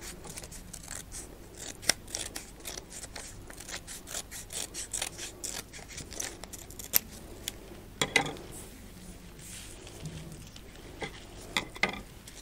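Scissors snipping through a thick stack of folded paper, a run of short cuts trimming off the excess edge. The cuts come densest in the first half and grow sparser after that, with light paper rustling.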